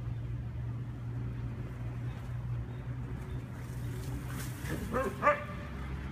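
A dog barking a few short, sharp barks about five seconds in, the last one the loudest, as dogs wrestle in play. A steady low hum runs underneath.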